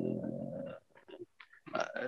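A man's voice holding a drawn-out hesitation sound, like a long 'eh', that trails off within the first second, then a brief pause with a few faint clicks before speech starts again near the end.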